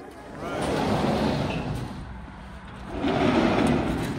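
A large sliding boathouse door rolling along its track as it is pulled shut, with a rumble that comes in two pushes: one starting about half a second in and a heavier one about three seconds in.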